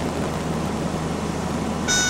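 Steady drone of a single-engine light aircraft's engine heard inside the cabin. Near the end a steady, high-pitched cockpit warning horn starts.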